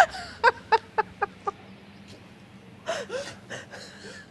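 A woman laughing hard. It opens with a loud shriek of laughter, then a run of short 'ha' bursts about four a second that grow fainter. After a pause of about a second, a few more breathy bursts of laughter come near the end.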